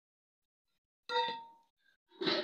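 A single metallic clang about a second in, a metal utensil or vessel striking the metal cooking pot, ringing out for about half a second.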